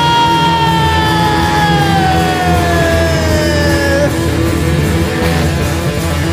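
Live rock band playing loud, with drums, bass and electric guitars. A long high note is held over the top and slowly slides down in pitch for about four seconds.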